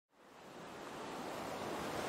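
Ocean wave ambience: a steady, even wash of water noise that fades in from silence and grows louder.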